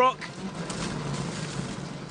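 Mini John Cooper Works WRC rally car heard from inside the cockpit, its engine running on a gravel stage just after a big hit on a rock. A steady low engine note sits under noisy rumble that swells about half a second in. The car has picked up a puncture on the front-right tyre, and it doesn't sound good.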